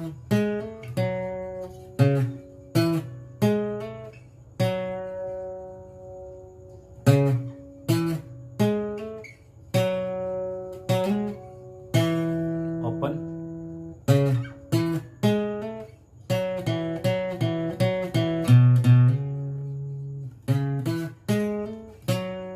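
Yamaha APX 500 II acoustic-electric guitar with a capo, fingerpicked: a melodic intro line of single plucked notes and chords, some let ring for a second or two before the next.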